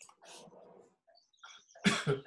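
Two short, loud vocal bursts in quick succession near the end, over faint scattered clicks.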